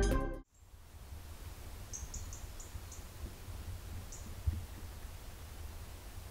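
Ambient music fades out in the first half second, leaving quiet morning woodland ambience with a low, steady rumble. A small bird gives a quick run of five faint, high chirps about two seconds in and one more about four seconds in.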